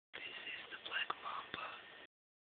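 A person whispering close to the microphone, with two short clicks, about a second in and again half a second later.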